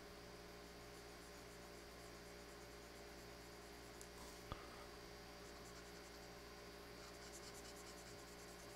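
Very faint scratching of a pen stylus on a drawing tablet over a steady electrical hum, with one sharp click about halfway through.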